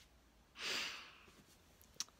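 A woman sighing: a single audible breath out, about half a second in, fading over under a second.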